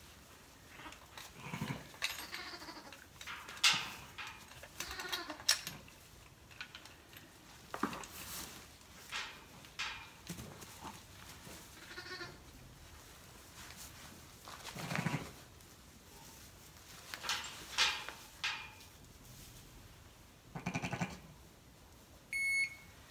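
Sheep bleating on and off, from newborn twin lambs and their ewe, with rustling and light knocks as a lamb is handled into a weighing sling.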